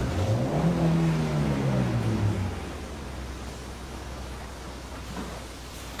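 A car engine revved once: the note climbs and falls back over about two seconds, then settles to a low steady idle. It is being blipped so that a buyer can judge the engine by its sound.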